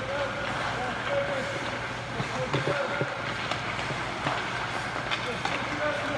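Ice hockey practice on an indoor rink: skates scraping the ice and sticks hitting pucks in scattered sharp clicks, over a steady low hum.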